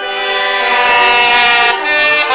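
Brass band holding a long, loud chord of several steady notes.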